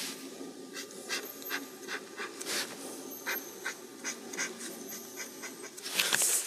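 Pencil sketching on paper: a run of short, quick scratchy strokes at an irregular pace, about two or three a second, with one longer stroke about two and a half seconds in.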